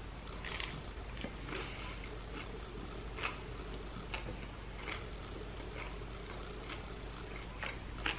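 A person biting into and chewing a fish wrap in a flour tortilla, with faint wet mouth clicks about once a second over a low steady room hum.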